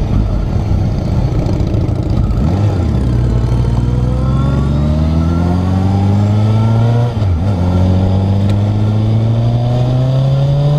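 Motorcycle engine heard from on board, pulling away and accelerating with its pitch rising steadily; about seven seconds in the pitch drops briefly at a gear change, then climbs again.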